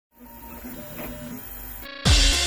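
FDM 3D printer at work: its stepper motors whine in steady tones that jump to new pitches as the print head changes moves. The sound fades in at the start and cuts off just before the end.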